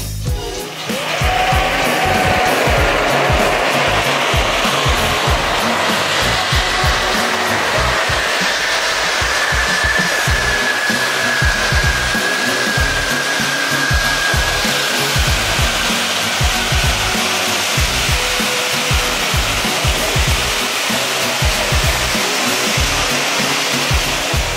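Several ground-standing spark fountains start about half a second in and hiss steadily with a loud, even rushing noise, while music plays more quietly beneath.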